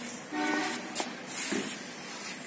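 A horn sounds once, a steady pitched tone lasting about half a second, shortly after the start, followed by a brief click.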